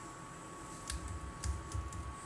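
Computer keyboard keys being typed: a quiet first second, then a quick run of keystroke clicks in the second half, over a faint steady high tone.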